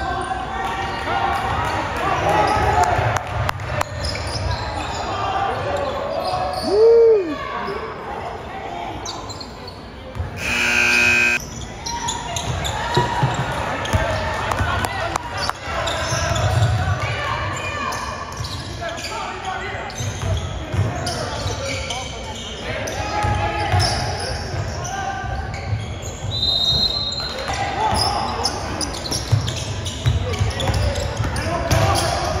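A high school basketball game in a gym: the ball bounces on the hardwood while the crowd talks in a large echoing hall. About seven seconds in a sneaker squeaks sharply, and about ten seconds in a buzzer sounds for about a second. A short high whistle comes near the end.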